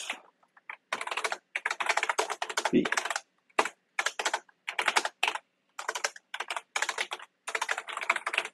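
Fast typing on a computer keyboard: quick runs of keystrokes with short pauses between them.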